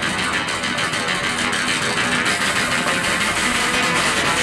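A live trio of electric guitar, upright double bass and drum kit playing together, with plucked guitar lines over bass and steady cymbal and drum strokes.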